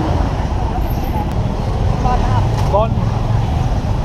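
Steady low rumble of street traffic and motor engines close by, with short snatches of voices.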